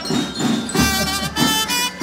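Band music led by wind instruments playing a melody.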